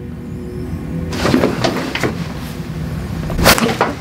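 A chiropractic neck adjustment gives one sharp, short crack about three and a half seconds in, over steady background music.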